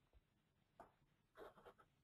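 Near silence, broken by a few faint short clicks a little under a second in and around a second and a half in.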